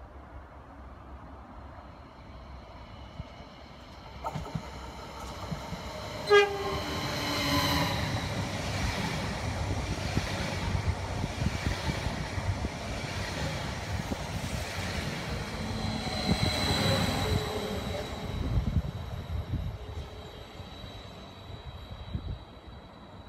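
Electric regional multiple-unit train approaching and running past close by, its wheel and motor noise swelling and then fading. A short horn blast sounds about six seconds in.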